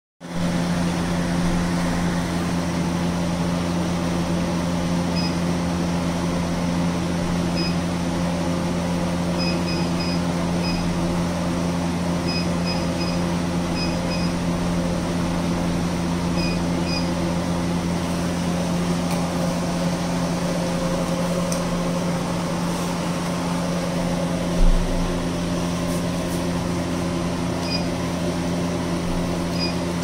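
Triple-wavelength diode laser hair removal machine running with a steady hum from its cooling, and short high beeps, singly and in quick runs of two or three, as its touchscreen is tapped. A single low thump about 25 seconds in.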